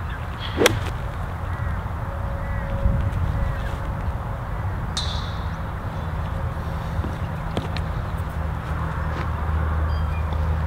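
A golf wedge strikes the ball about half a second in, one sharp crack. A low steady rumble of wind on the microphone runs underneath, and a short high-pitched sound comes about five seconds in.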